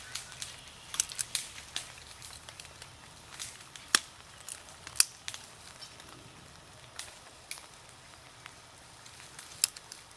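A dog chewing on a dry dead branch: irregular sharp cracks and snaps of wood, the loudest about four and five seconds in.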